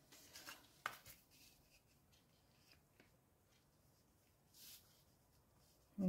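Near silence with a few soft rustles of cardstock being handled and laid down, and one sharp little tap just before a second in.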